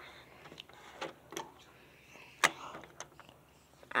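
A few light, scattered clicks and taps of handling, the sharpest about two and a half seconds in, as the camera moves over plastic Lego pieces on a table.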